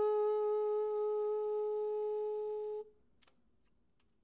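Selmer Mark VI tenor saxophone holding one long final note that fades a little and stops cleanly a little under three seconds in, followed by a faint click.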